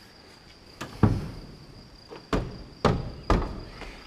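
Door of a 1969 Plymouth Barracuda being shut: a sharp clunk about a second in, then three lighter knocks.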